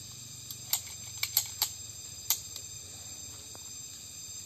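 A quick string of about six sharp pistol shots from a CZ 75 SP-01 Shadow 9 mm, all within about two seconds.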